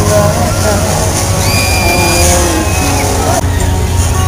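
Fairground din around a spinning carnival ride: a steady low machine hum under music and the babble of crowd voices, with a couple of brief high tones near the middle.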